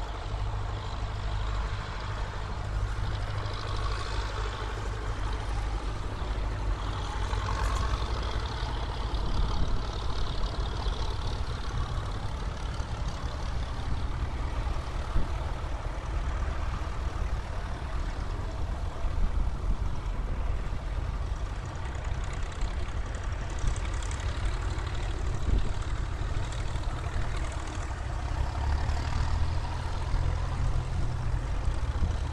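Tractor engines running as a line of tractors drives past, one after another, a steady low rumble throughout.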